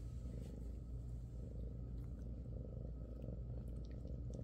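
Bengal cat purring steadily, a low continuous purr.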